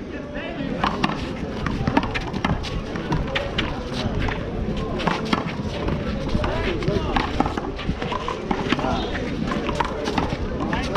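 A one-wall handball rally: sharp, irregular slaps as a small rubber ball is struck by hand and bounces off the concrete wall and court, over background voices.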